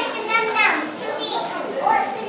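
Children talking and calling out in high voices, over a background of crowd chatter, the loudest call about half a second in.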